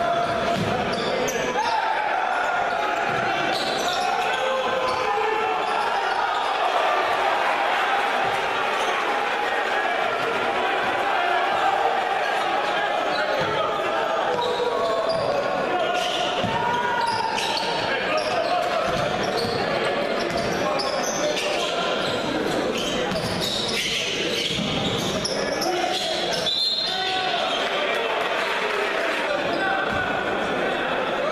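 Basketball game in a gymnasium: spectators' voices in a steady hum, a basketball bouncing on the wooden court, and short sharp sounds from play, with the echo of a large hall.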